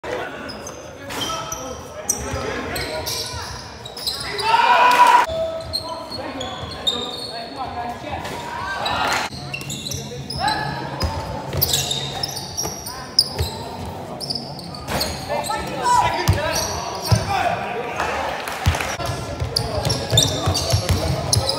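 Basketball bouncing on an indoor court during a game, with players and spectators calling out. The sound echoes in the large hall.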